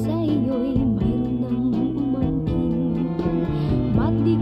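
A Filipino pop ballad: a woman sings a Tagalog lyric line with vibrato over an accompaniment of long held bass notes.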